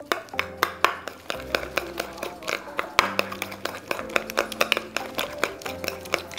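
Metal spoon stirring mayonnaise and bacon salt in a small stainless-steel bowl: a rapid, irregular run of clicks and taps of spoon against the bowl.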